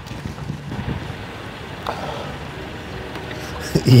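Steady wind noise buffeting the microphone outdoors, a low rumbling hiss with a faint click about two seconds in.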